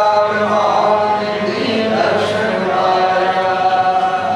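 Sikh kirtan: a man singing a hymn in a chanting style to harmonium accompaniment. The harmonium reeds hold steady chords under the voice.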